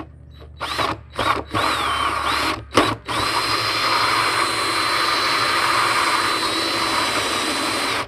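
Cordless drill turning a hole saw through the top of a plastic 55-gallon barrel. It starts in a few short bursts that spin up and down, then runs steadily for about five seconds as the saw cuts the plastic, and stops near the end.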